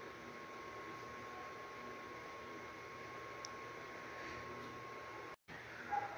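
Quiet room tone: a faint steady hiss with a thin steady whine, broken off by a brief dead-silent gap near the end. The hand-winding of the fine wire is not clearly heard.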